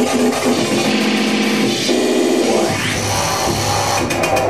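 Loud, dense live noise music: held droning tones over a harsh noisy wash, with a sweep rising in pitch about two and a half seconds in, followed by a low drone.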